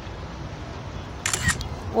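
Steady outdoor background noise picked up by a phone microphone, a faint hiss and low rumble, with a short crackly burst about one and a half seconds in.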